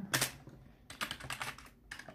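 Computer keyboard typing: separate key clicks, a sharper one just after the start, then a quick run of keystrokes about a second in and one more near the end.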